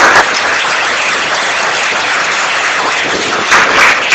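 Audience applauding steadily, with a few separate claps standing out near the end.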